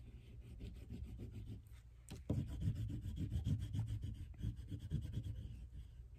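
Green oil pastel rubbed rapidly back and forth on construction paper, colouring in a leaf: a scratchy rubbing that grows louder after a short knock about two seconds in.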